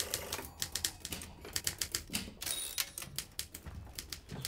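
Manual typewriter keys striking quickly and unevenly, several clacks a second, with a short rasp a little past halfway through.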